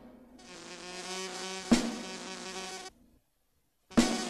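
A steady buzzing drone, like a fly, that fades in, is broken by one sharp click partway through and stops abruptly about three seconds in; a loud sudden sound starts right at the end.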